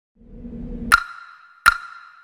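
Cinematic intro sound design: a low swell builds for about a second and ends in a sharp metallic hit. A second, identical hit follows under a second later, and each hit leaves a clear ringing tone.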